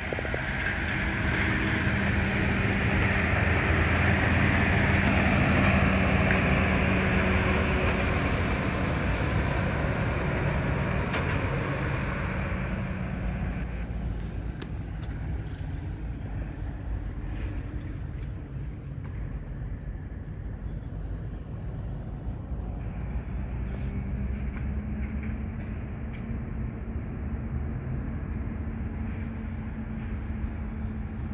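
A heavy road vehicle going past close by: engine and tyre noise that swells over the first few seconds and dies away after about twelve seconds. It leaves a lower steady traffic noise, with a low engine hum coming in near the end.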